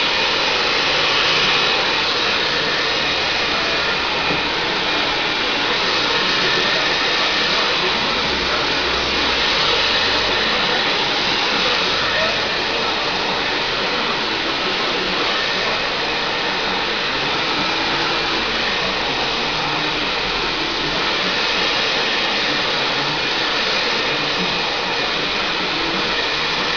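Handheld salon hair dryer running steadily, blowing hot air through hair as it is blow-dried.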